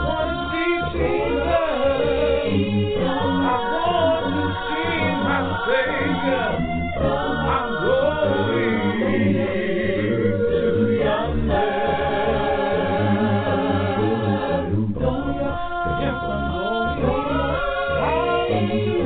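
A cappella gospel vocal group singing in harmony, voices only, with brief pauses between phrases.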